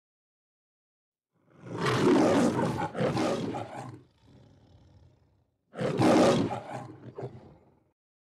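Two long, rough roars, the first starting about a second and a half in and lasting over two seconds, the second shorter and coming near the end.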